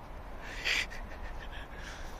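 Footsteps crunching on packed snow, with one louder crunch about half a second in and fainter steps after it, over a low steady rumble.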